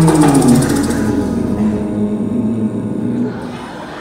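Live band music ending: a held note slides down in pitch about half a second in. The band and a fine shaken hand-percussion rattle stop about a second in, leaving a quieter sound dying away in the hall.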